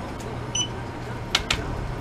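A single short, high electronic beep from the checkout register about half a second in, then two sharp clicks in quick succession. A steady low hum runs underneath.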